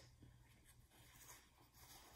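Near silence: room tone, with a faint rustle of a paper towel being folded in the hands.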